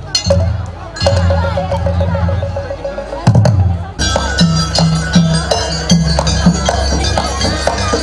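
Gamelan ensemble of metallophones, gongs and kendang drum playing dance accompaniment. Heavy low strokes come in the first few seconds, then from about four seconds in the full ensemble plays a quick, steady beat of ringing metal strikes.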